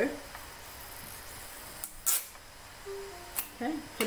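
Sellotape pulled and torn from a small dispenser: one short rasp about halfway through, followed by a light click.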